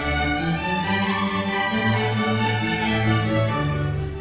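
A symphony orchestra playing, its bowed strings to the fore in a passage of held notes.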